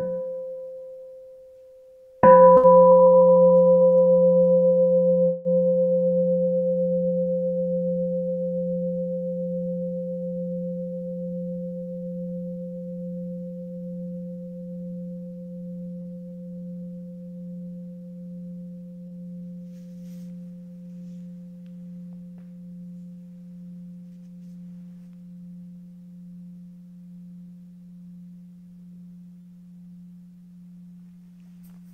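A Buddhist meditation bowl bell is first given a light tap that dies away in about two seconds, the waking of the bell. About two seconds in it is struck fully and rings on, its hum fading slowly and pulsing gently.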